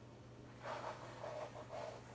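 A plastic comb dragged through wet acrylic paint on a stretched canvas, making three or four short, soft scraping strokes.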